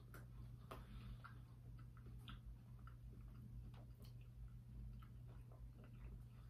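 Near silence: a low steady hum with faint, irregular clicks of someone chewing a sandwich.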